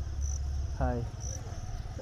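Insects trilling steadily at a high pitch, briefly louder twice, over a low rumble.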